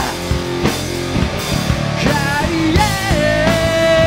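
Rock band playing live: drum kit, electric guitar and bass, with a long held note that bends in pitch near the middle.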